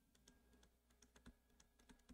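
Near silence: room tone with faint, scattered clicks.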